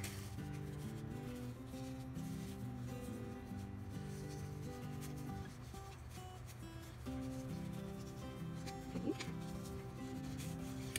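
Soft background music with long held notes, over the light rustle and sliding of paper tags and cards being tucked into a paper pocket.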